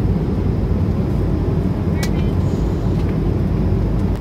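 Steady cabin noise of a jet airliner in flight, engine and airflow noise heard from inside the cabin, heavy in the low end. A brief click comes about halfway through.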